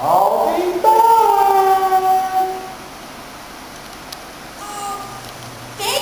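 A woman's character voice for the Goldilocks marionette making a long, drawn-out, wordless vocal sound. It glides at first, then holds and slowly falls in pitch for about three seconds. A couple of short vocal sounds follow near the end.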